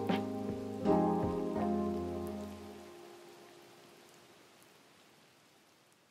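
Soft piano background music, with a few last notes struck about a second in and fading out over the next few seconds, over a steady rain-like hiss that also fades away.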